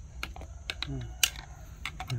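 Screwdriver tip clicking and scraping irregularly against the metal centre hub of a machine cooling fan as it is pried at to get at the retaining clip on the motor shaft, with one sharper click a little past halfway.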